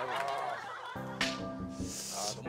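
Comic honking sound effect: a steady held horn-like tone starts about a second in, opened by a sharp click.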